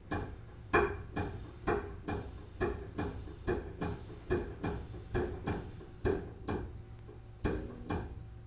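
Hydrostatic test pump stroking in a steady rhythm, a sharp clack about twice a second, as it builds water pressure in the test cylinder toward 1,000 psi.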